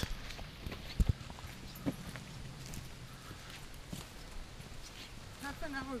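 Footsteps of hikers on a rocky dirt trail, a few scattered knocks, the loudest about a second in.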